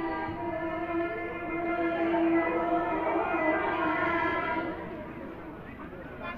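Toraja suling lembang, a long bamboo flute, playing a sustained melody with a strong held low note. It fades about four and a half seconds in.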